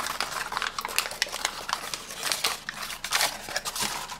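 A folded paper origami tessellation crinkling and crackling as hands flex and squeeze it: a quick, uneven run of small clicks and rustles.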